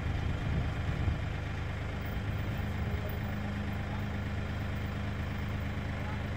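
Kioti compact tractor's diesel engine idling steadily, with a steady higher hum joining about two seconds in.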